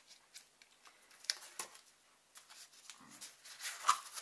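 Cardboard packaging and a nylon stuff sack rustling and scraping as the packed heat-reflective bivvy bag is slid out of its card sleeve, with a few sharp clicks, the loudest just before the end.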